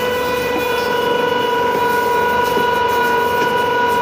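Tower crane's electric drive motors whining steadily, one high pitched tone with several overtones, as the crane slews a suspended load.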